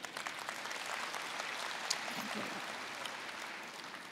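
Audience applauding, a steady patter of many hands clapping that eases off a little near the end.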